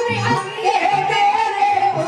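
A woman singing a Haryanvi ragni through a microphone, holding one long high note from about half a second in, over instrumental accompaniment with a low beat.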